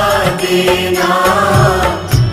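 Hindi devotional bhajan music in a pause between sung lines: held melody notes over a steady rhythmic beat.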